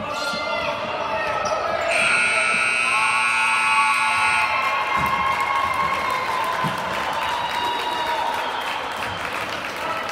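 Gymnasium scoreboard horn sounding one steady blast for about two and a half seconds, marking the end of the basketball game, over crowd voices and shouting in the gym. A basketball bounces a couple of times on the hardwood floor after the horn.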